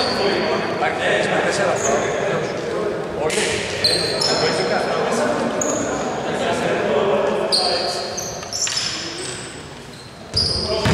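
Basketball game in a large reverberant hall: sneakers squeaking in short, high chirps on the hardwood court, a ball bouncing, and players' voices echoing.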